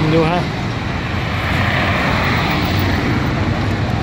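Steady road traffic noise from passing vehicles, swelling briefly about halfway through as one goes by.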